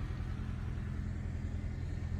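Steady low hum of a 2017 Subaru Impreza's 2.0-litre flat-four engine idling, heard from inside the cabin.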